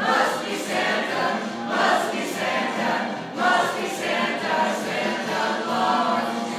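A group of people singing a Christmas carol together in chorus, in phrases that swell and fall every second or two.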